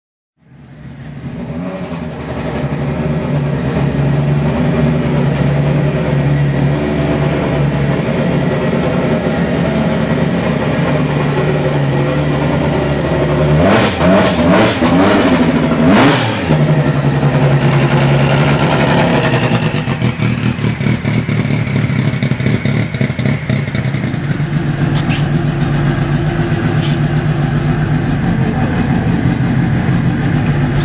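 Lancia Delta S4 tribute car's engine fading in and idling steadily, blipped midway so its pitch sweeps up and back down a few times, then settling back to a steady idle.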